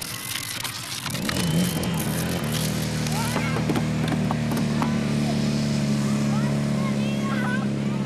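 A small engine, typical of a firefighting competition's portable fire pump, starts up about a second and a half in and then runs steadily.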